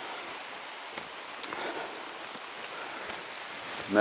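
Steady rain falling on the leaves of a broadleaf forest, with one faint click about a second and a half in.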